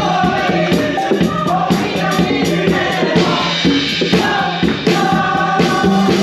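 Live gospel music: a group of voices singing together over drum kit, keyboard and hand percussion, with a steady beat.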